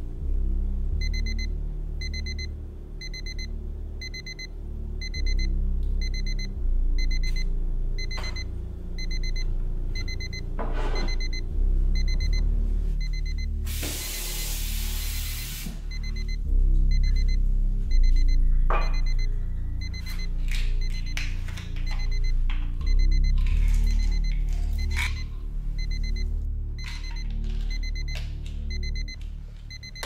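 Digital watch alarm beeping in rapid, evenly repeated high pips over background music, the signal to take a pill. The beeping breaks off about twelve seconds in, when water runs from a kitchen tap for about two seconds, then starts again, with a few knocks of things being handled.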